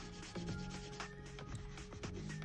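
Colored pencil shading on drawing paper: a dry, scratchy rub in repeated strokes, over soft background music.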